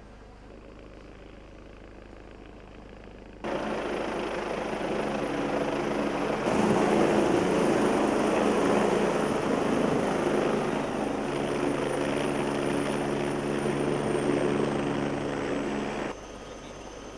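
Helicopter rotor and turbine engine noise from a video's soundtrack played over a hall's loudspeakers. It comes in suddenly about three seconds in and grows louder a few seconds later as the helicopter lands, with a high whine that dips slightly near the end before the sound cuts off.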